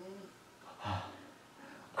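A man's short, audible breath about a second in, after the faint tail of his speech; otherwise quiet room tone.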